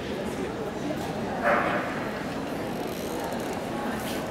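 A dog barks once, loudly and briefly, about a second and a half in, over the steady hubbub of voices in a large hall.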